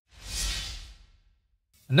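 A whoosh transition sound effect that swells quickly and fades away over about a second.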